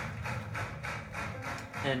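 The opening of a live jazz recording played back through room speakers: crowd noise with a fast, even crackle like clapping, before the piano comes in.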